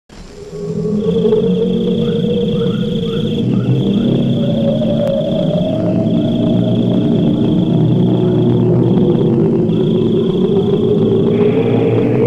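Film soundtrack night ambience: a continuous high-pitched insect trill, broken every couple of seconds by a short gap, over a steady low hum.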